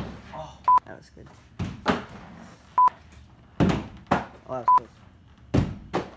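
A few sharp thuds as a thrown bottle hits the floor, with short high beeps about every two seconds.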